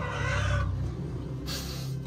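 A woman crying: a wavering, high-pitched sob in the first half-second, then a short noisy breath about one and a half seconds in.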